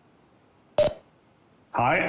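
Near silence broken about a second in by a single short, sharp click with a brief tone in it; a man's voice begins near the end.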